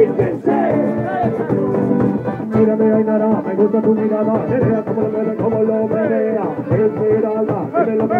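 Strummed acoustic guitar in a steady rhythm with several voices singing along in Spanish, a loose amateur group cover of a rumba-punk song.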